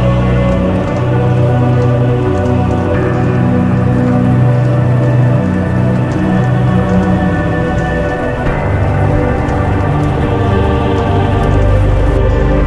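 Slow ambient background music of long held chords, changing chord about three seconds in and again past the middle, over a steady patter of rain.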